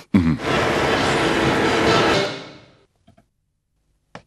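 Scene-transition sound effect: a dense, hissing swell with held tones lasts about two seconds and then fades out, leaving near quiet with a couple of faint ticks.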